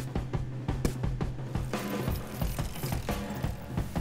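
Background music with a quick run of mechanical ratcheting clicks over it, a bicycle-pedaling sound effect.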